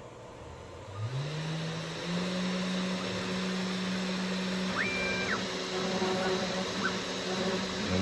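The CNC machine's router spindle spins up about a second in, its hum climbing in pitch and then running steady at full speed. Midway a brief higher whine rises, holds and falls as the stepper motors drive the head over to start the carve.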